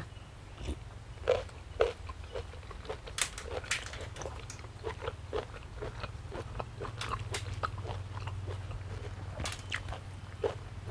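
Close-up chewing of a mouthful of crunchy pork sai tan (spicy pork-tube salad): irregular crisp crunches and wet mouth clicks. A steady low hum runs underneath.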